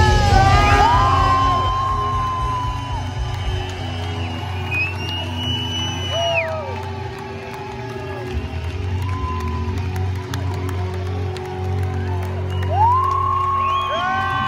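A rock band finishing a song live: the full band sound dies away over the first few seconds, leaving a low steady amplifier hum, while the crowd in the hall cheers with long whoops and yells that grow stronger near the end.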